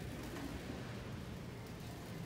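Steady low background hum and hiss of a large store's interior, with no distinct events.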